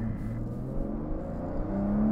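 Aston Martin Vanquish's 5.9-litre V12, heard from inside the cabin, accelerating hard from low revs, its note rising steadily in pitch.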